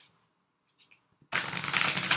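A deck of oracle cards being shuffled by hand, a quick rustling riffle that starts about a second and a half in after a moment of quiet. Near the end a card flips out of the deck onto the table.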